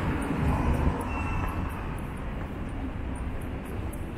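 A train's rumble, loudest in the first second and slowly fading, with a faint, brief high squeal about a second in.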